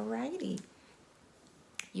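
A woman's voice speaking a short word, then low room tone, then a single short click just before she starts speaking again near the end.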